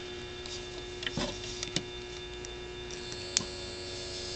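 Small DC hobby motor running steadily on AA batteries with a faint even whine, and a few sharp clicks of alligator clips and wires being handled, the loudest a little over three seconds in.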